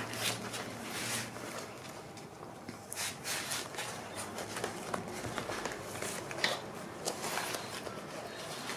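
Paper scraps, cardstock strips and journaling cards being shuffled and slid over one another by hand: quiet rustling with a few light clicks and taps.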